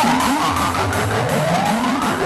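Hardcore/gabber electronic music: a new section that starts abruptly, with pitches sliding up and down over a steady low bass.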